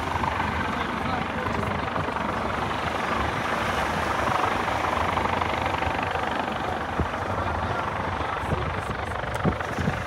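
Coast Guard MH-65 Dolphin helicopter hovering over water: a steady rotor and turbine drone, with people's voices nearby. A few brief knocks near the end.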